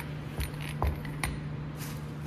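A few light metal clinks and knocks as honing mandrel parts are handled and set down on a steel workbench, the sharpest a little under a second in, then a short rustle of plastic wrapping near the end.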